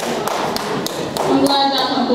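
Applause dying down to a few scattered hand claps in a large hall, with a voice starting up a little past halfway.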